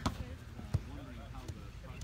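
A single sharp thud about three quarters of a second in, with a smaller click at the start, over faint distant voices of players on the field.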